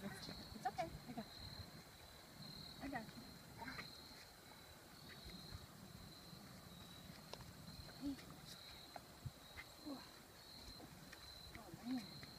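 Quiet outdoor ambience with a steady, high-pitched pulsing insect chorus, broken by a few brief, soft voice sounds.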